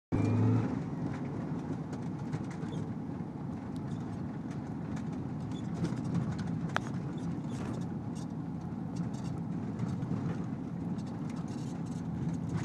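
Steady engine and road noise of a Dodge minivan wheelchair van driving, heard inside the cabin as a low rumble, with light scattered ticks and one sharp click about seven seconds in.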